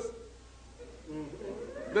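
A faint, high-pitched voice about a second in, bending up in pitch near the end.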